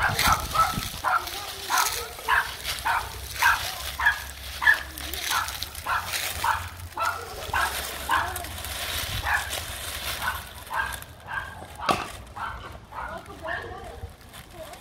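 A small dog barking over and over at an even pace, about two barks a second, growing fainter after about eleven seconds.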